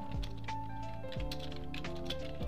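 Typing on a computer keyboard, a quick irregular run of key clicks, over background music.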